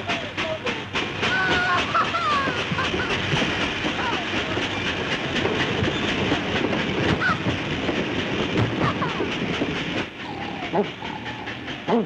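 Cartoon sound effect of a moving freight train: a rhythmic clickety-clack of wheels over the rail joints under a steady rushing noise, with a few short high cries over it early on. The train sound falls quieter near the end.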